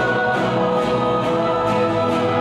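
Church worship band playing a song on guitars and keyboard, with several voices singing together in long held notes.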